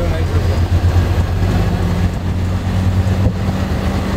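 Bus diesel engine running steadily at low speed, heard as a low hum inside the driver's cabin. A second, higher steady tone joins about a second and a half in.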